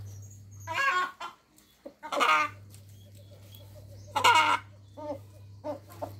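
Farmyard fowl calling: three loud calls about a second and a half apart, then a few softer ones near the end, over a steady low hum that drops out for a moment about a second in.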